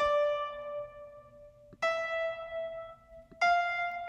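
Piano playback from music notation software: three single notes, each sounding as it is entered and then fading, stepping up the F major scale from D to E to high F (la, ti, do). A faint click comes just before each note.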